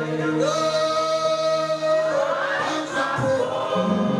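A congregation singing a gospel worship song together, with long held notes.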